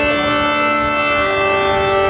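Harmonium playing a held chord of steady reed tones. One note in the chord moves up a step a little over a second in.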